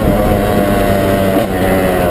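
KTM EXC two-stroke enduro bike engine running at a fairly steady speed while being ridden, heard from on the bike. There is a brief dip about one and a half seconds in.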